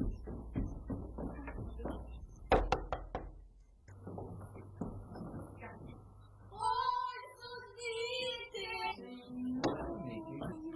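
A few quick, sharp knocks on a wooden door about two and a half seconds in. Later a high, wavering pitched call lasts about two seconds.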